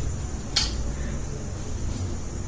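Steady low hum with a single short, sharp tick about half a second in.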